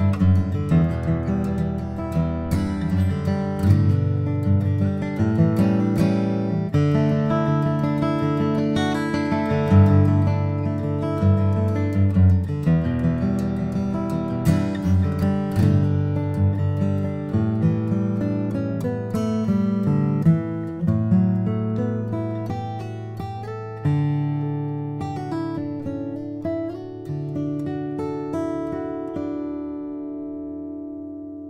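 John Arnold D-18 style dreadnought acoustic guitar, with a tree mahogany back and sides and a West Virginia red spruce top, played solo: a picked tune with chords. It gets gradually softer toward the end, and the last notes are left to ring out.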